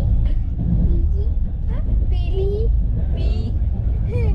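Steady low rumble of a moving passenger train heard from inside the coach, with children's voices and laughter breaking in over it several times.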